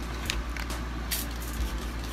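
Room noise: a steady low hum with a few faint, short clicks or rustles.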